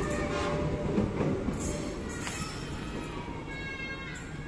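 Airport rail link electric multiple unit running away after passing close by: wheel-on-rail rumble and rattle fading as the train recedes, with faint high steady tones in the second half.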